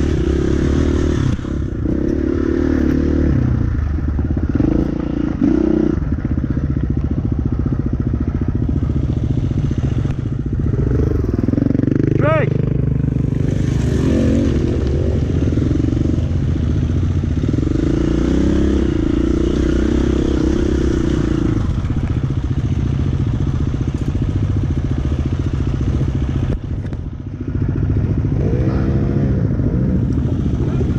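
KTM enduro dirt bike's engine running at low revs close to the microphone, its pitch rising and falling in steps with the throttle as the bike crawls over rock.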